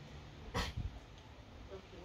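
A single short, sharp sound about half a second in, in two quick parts, over faint background noise.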